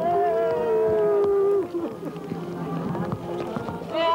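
Several mourners wailing in long, drawn-out cries over one another, their voices sliding in pitch, a lament for a dead child.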